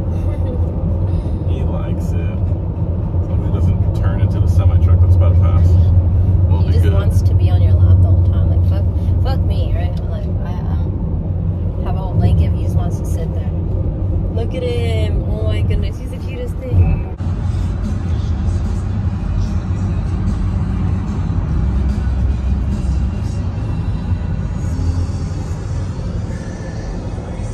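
Steady low drone of a van's engine and road noise heard from inside the cabin while driving, with music and voices over it.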